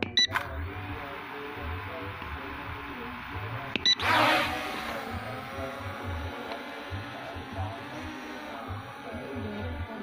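S1S foldable quadcopter drone beeping twice, then its motors spinning up with a loud rush about four seconds in as it lifts off and hovers with a steady multi-tone whine. A low, regular beat of background music runs underneath.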